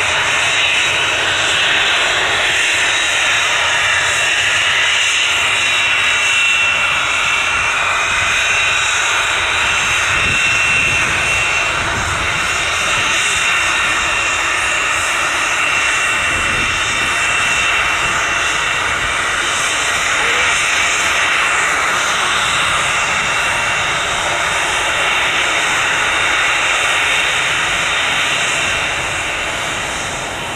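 Rear-mounted twin turbofan engines of a Cessna Citation 560XL business jet running at taxi power: a steady jet whine with a high held tone over rushing engine noise, easing slightly near the end.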